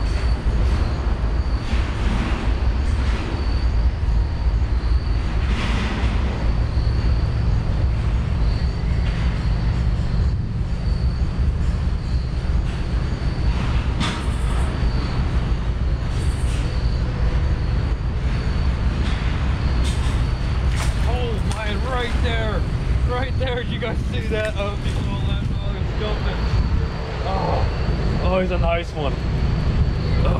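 Steady low rumble of a river's flowing water, with a few sharp clicks. From about two-thirds of the way through, a person's wordless voice wavers up and down in pitch over it.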